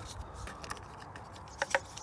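A plastic wiring connector being handled in the fingers: a few faint ticks, then two sharper clicks in quick succession near the end.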